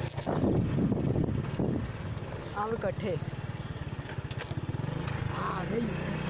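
Motorcycle engine running with a steady, rapid putter as the rider moves along. Wind rushes on the microphone for about the first two seconds, then drops away.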